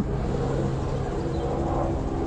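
Steady low mechanical drone with a few held tones, like an engine or motor running nearby, unchanging through the pause.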